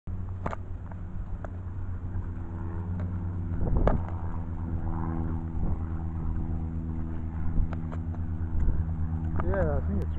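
Light aircraft's piston engine and propeller running steadily at low taxiing power, a constant drone, with a few short clicks and a voice near the end.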